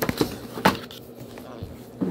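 Cardboard box holding a small steel drawer safe being handled and set down on a wooden floor: a few knocks in the first second, the loudest about two-thirds of a second in, then faint handling noise.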